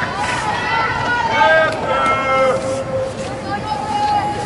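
High-pitched voices shouting calls across a large indoor sports hall, several of them drawn out and held on one pitch.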